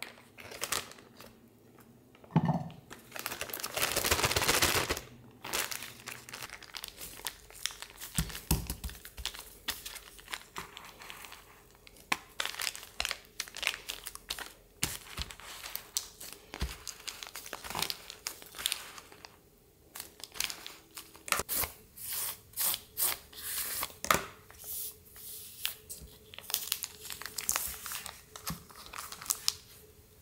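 Plastic zip-top bag crinkling and rustling as it is handled, with a longer, louder rustle about three seconds in. After that come many short crackles as a plastic scraper presses and smooths soft orange jelly flat inside the bag.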